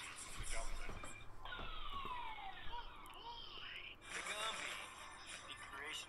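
Voices from a played-back video. About one and a half seconds in they give way for roughly two and a half seconds to a falling, siren-like pitch glide, then resume.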